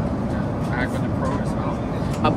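Steady low rumble of an Airbus A350 airliner cabin in flight, with faint voices in the background.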